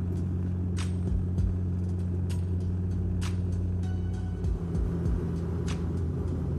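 Steady low drone of a Bombardier Q400 turboprop's engines and propellers, heard inside the passenger cabin.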